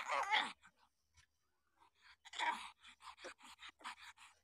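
Week-old puppies whimpering and squeaking: a loud wavering cry at the start, another cry about two and a half seconds in, and a string of short squeaks around them.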